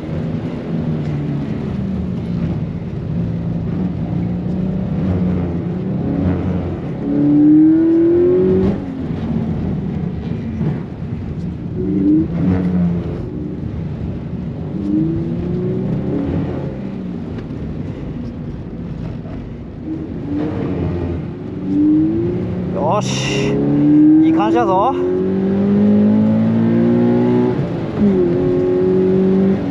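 Toyota 86's flat-four engine heard from inside the cabin, revving up and dropping back again and again as the car accelerates and shifts through the gears, over steady road noise. A couple of brief sharp sounds come near the end.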